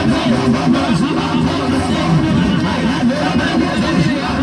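Church music played loud through the sound system, with many voices overlapping in a steady, dense mass and no single clear voice.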